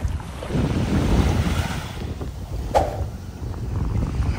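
Wind buffeting the microphone in a low, rising and falling rumble, with one sharp knock almost three seconds in.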